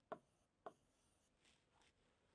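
Faint strokes of a marker on a writing board as a number is written and circled: a few short soft sounds in near silence.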